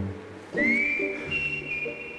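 Background music in the show's edit: a whistle-like tone slides up about half a second in and then holds, over sustained chords that shift a couple of times.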